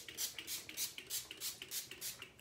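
Fine-mist pump spray bottle of sea salt hair spray being pumped over and over, a rapid run of short hissing sprays at about three a second.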